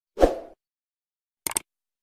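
Sound effects of a subscribe-button animation: a short pop about a quarter second in, then a quick cluster of sharp clicks about one and a half seconds in.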